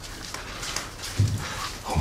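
Animal sounds from the film scene's soundtrack, heard faintly over background noise, with a low voice starting near the end.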